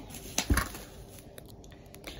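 Tissue-paper packing stuffing being handled and pulled out of a box: faint paper rustling, with two sharp knocks about half a second in.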